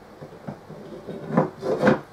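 Side panel of a metal equipment case being slid down into the case's lip, scraping metal on metal, with two louder scrapes in the second half.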